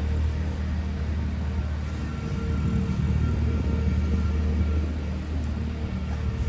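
A motor vehicle's engine running with a steady, low rumble.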